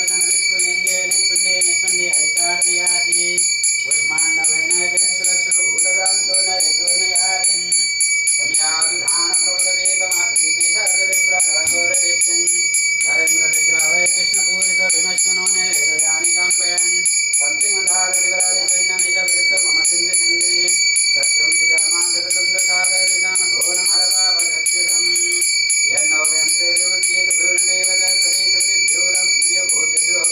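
A puja hand bell rung continuously in a rapid, unbroken ringing, over voices chanting in repeated phrases that break about every four to five seconds.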